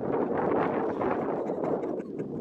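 Wind blowing across the microphone, a steady rough rushing.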